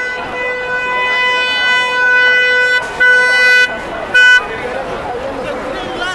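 A car horn sounding at pedestrians crowding the roadway: one long steady blast held for nearly three seconds, a shorter blast about three seconds in, and a brief toot just after four seconds.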